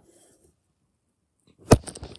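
Quiet, then one sharp knock near the end with a few small clicks after it: handling noise as the model airliner and the phone filming it are moved.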